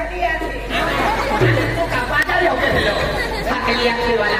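Speech: stage performers talking and bantering through an open-air PA system, over a steady low hum.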